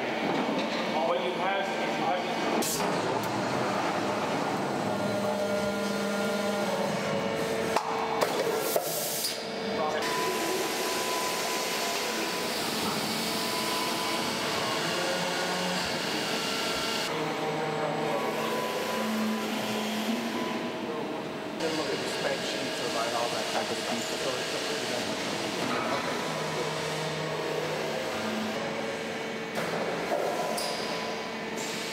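Factory floor noise from plastic injection moulding machines running: a steady mechanical hum with several held tones, with a few sharp clacks about eight seconds in. The sound changes character a few times.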